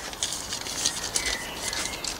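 Irregular small crinkles and clicks of a paper seed packet being handled between the fingers.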